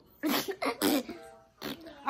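A person's voice making three quick, breathy, cough-like bursts in the first second, then one more short burst near the end.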